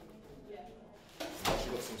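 Rustling and handling noise of a nylon drawstring bag being picked up and opened, starting a little over a second in and loudest about halfway through, over faint voices.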